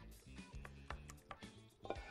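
Faint background music, with a few light clicks and scrapes of a utensil against a pan as thick seafood filling is tipped into a glass baking dish.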